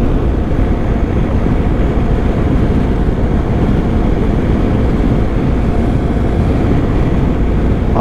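Steady wind rush and engine drone of a BMW GS Adventure motorcycle cruising at about 96 km/h, heard from on the bike.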